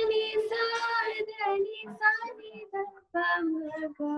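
One high solo singing voice, heard over a video call, opening on a long held note and then moving through short sung phrases with brief breaths between them.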